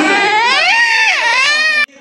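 One long, high-pitched vocal wail, its pitch rising and then falling, cut off suddenly near the end.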